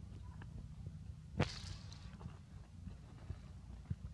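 A single sharp crack or snap about a second and a half in, the loudest sound, with a few faint clicks over a low steady rumble.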